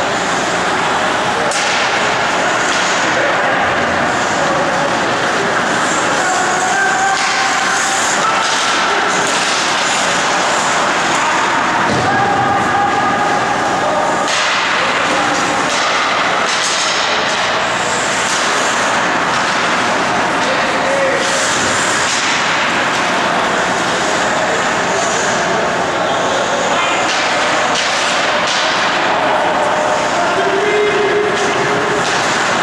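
Ice hockey game ambience in a rink: a steady noisy arena wash with indistinct voices of players and spectators, skates scraping on the ice and occasional sharp knocks of sticks and puck.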